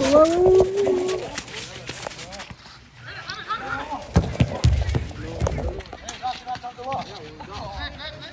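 Players shouting to each other during a small-sided soccer game, with one long, loud shout at the start. Between the calls come sharp thuds of the ball being kicked and the patter of running feet on the turf.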